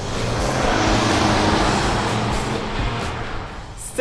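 Ford Bronco driving, its road and wind noise swelling over the first second and then slowly fading, as in a pass-by, under background music.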